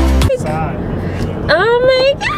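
Background music cuts off just after the start, giving way to road noise inside a moving car. Over it a person gives two excited vocal exclamations, the second, near the end, a high squeal rising in pitch.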